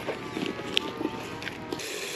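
Plastic potting-mix bag crinkling as soil is scooped and poured into a plastic pot, with scattered sharp clicks and rustles. Near the end a garden hose spray nozzle starts, a steady hiss of water.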